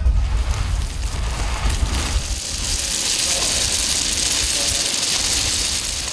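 Sacha inchi seeds pouring from a sack into a stainless-steel hopper: a dense, steady rattling hiss much like rain. A low rumble runs under it for the first couple of seconds.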